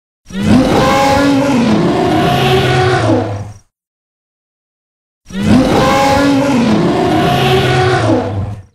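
Tarbosaurus roar sound effect: a long, growling roar whose pitch rises and then falls, played twice with a silent gap of about a second and a half, the second roar a repeat of the first.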